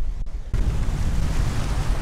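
Strong wind buffeting the camera microphone. The noise jumps abruptly about half a second in to a loud, deep, steady rush that is heaviest at the low end and is enough to clip the audio.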